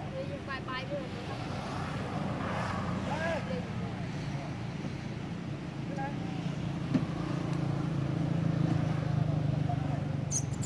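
A low, steady motor hum that grows louder in the second half, with faint voices over it and a single sharp click about seven seconds in.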